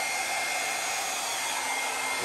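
A small hair dryer running steadily with a thin high whine, blowing air across wet acrylic paint to push it over the canvas.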